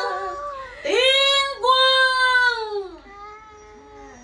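Woman singing a cải lương (Vietnamese reformed opera) passage: two long held notes, the first starting about a second in, the second just after it, each bending down in pitch as it ends, then a soft trailing phrase near the end.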